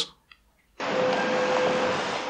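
Steady street traffic noise with a faint steady hum, starting suddenly just under a second in.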